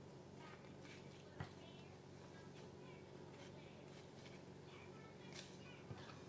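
Near silence: a steady low hum of room tone with faint rustling and light clicks as fresh plantain leaves are handled on a wooden counter, and one sharper click about a second and a half in.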